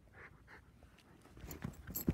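Small dog panting faintly in a few soft breaths, with some light clicks near the end.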